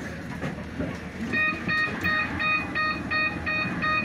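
A bus's door warning beeper sounds a rapid, even run of short electronic beeps, about three a second, starting just over a second in. Underneath is the steady rumble of the stopped bus's engine.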